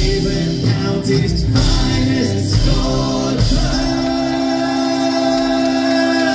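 A live folk band singing and playing, with banjo, acoustic guitar, upright bass and drums. About halfway through, the voices and instruments hold one long sustained chord.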